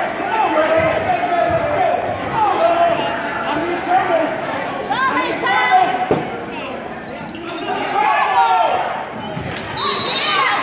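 Players and spectators shouting and calling out during a basketball game, with a basketball bouncing on the hardwood court. The voices echo in a large gym.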